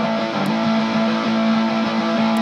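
Electric guitar played through a Stone Deaf Effects Fig Fumb parametric fuzz filter pedal: a held, heavily fuzzed note that sustains steadily.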